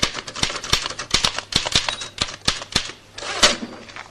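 Typewriter keys struck in quick, irregular runs of sharp clacks, about six a second, with a longer noisy sound near the end.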